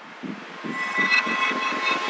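Build-up intro of an electronic drum and bass track: soft low pulses about three times a second under a rising hiss and sustained high tones, growing steadily louder.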